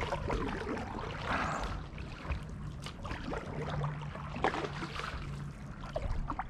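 Kayak paddle strokes in shallow water, with water trickling and dripping off the blade and a couple of sharp knocks, the clearest about four and a half seconds in.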